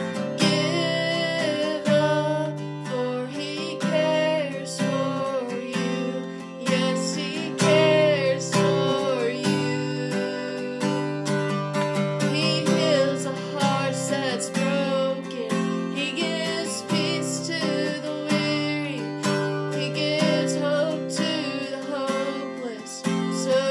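A woman singing while strumming an acoustic guitar, the strummed chords running steadily under her voice.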